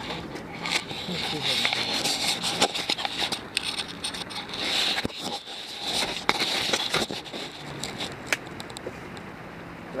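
Small wet wood fire crackling with sharp pops as gasoline is poured onto it from a plastic gas can, with a few brief louder hissing swells.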